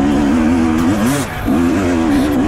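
Enduro dirt bike engine revving hard under load on a steep rocky climb. Its pitch wavers constantly, sags about a second in, then picks straight back up.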